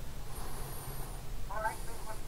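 Faint, thin voice of the caller leaking from a corded telephone handset's earpiece, starting about a second and a half in, over a low steady hum.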